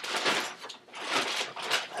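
Small objects being handled and set out on a table: irregular clattering and rustling.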